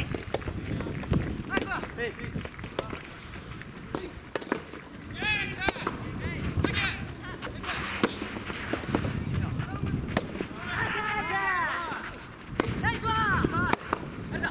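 Soft tennis rally: rackets striking the soft rubber ball in sharp pops about a second apart, with voices shouting between shots.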